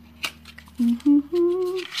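A woman humming three short notes, each a step higher than the last, as she works at opening a small cardboard lip-cream box, with a sharp click from the packaging about a quarter second in; the humming ends in a short laugh.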